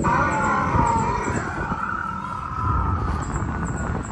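Animatronic crested hadrosaur's recorded call played from a loudspeaker: one long wavering call that starts suddenly, falls slightly in pitch and fades out after about three seconds.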